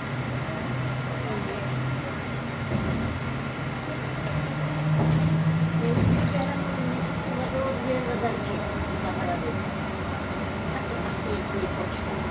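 Škoda 27Tr Solaris trolleybus on the move, heard inside the cabin: the electric traction drive hums with steady low tones that rise in pitch and grow louder about four to six seconds in, then settle back.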